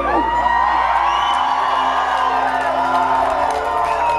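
Rock-club audience cheering and whooping as a heavy-metal song ends, many voices rising and falling at once over a steady held tone from the stage.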